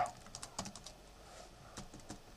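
Faint typing on a computer keyboard: a run of scattered key clicks, a pause of about a second, then a few more clicks near the end.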